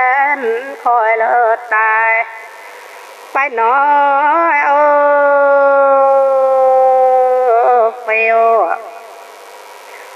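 Iu Mien traditional song sung unaccompanied by a woman: a few short wavering phrases, then one long held note that slowly sinks in pitch, with quiet pauses between phrases.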